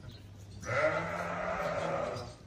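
A ram bleating: one long, low call that starts just over half a second in.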